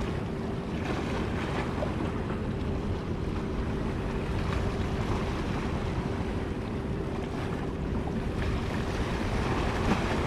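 Wind rumbling on the microphone over the wash of harbour water, with a faint steady hum underneath.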